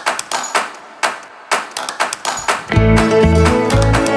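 Background music: sparse, sharply struck plucked notes, then a full band with a steady, heavy bass beat comes in about two-thirds of the way through.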